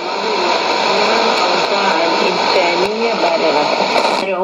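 Weak shortwave AM broadcast on a Sony ICF-2001D receiver: a voice reading Arabic news, half buried in hiss and static, with steady whistle tones from interference running under it.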